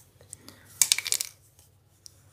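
A plastic ruler being set down and shifted on paper: a short rattle of light clicks about a second in.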